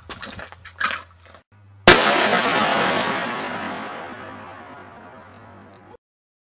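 A single shot from a Taurus Raging Bull .454 Casull revolver about two seconds in. It is followed by a long noisy tail that fades out over about four seconds.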